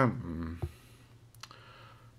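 A man's voice trails off at the start. About half a second later comes a short sharp click, then a fainter click around a second later, then near quiet.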